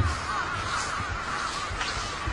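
Background birds calling, a steady chorus of many small repeated calls, with a few soft low thumps.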